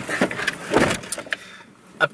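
Handling noise inside a parked car's cabin: a few short knocks and rustles in the first second, then it goes quiet.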